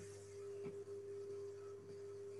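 A faint steady tone at one held pitch, with a lower steady hum beneath it.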